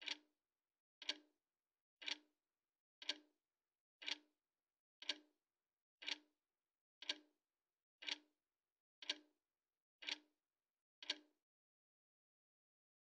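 A clock ticking steadily, one tick a second, each tick a short double click. The ticks stop about a second before the end.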